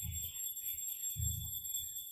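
Faint pencil scratching on diary paper as a word is written. Under it are a steady high-pitched electronic whine and soft low rumbles about every second and a half.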